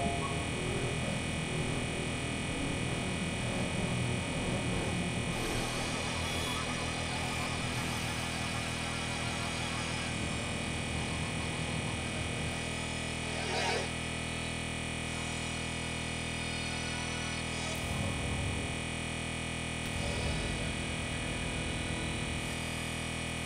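Experimental synthesizer drone made of many steady layered tones. A crackling, glittering texture drifts over it in the first half, with a short swell about fourteen seconds in and soft low pulses near the end.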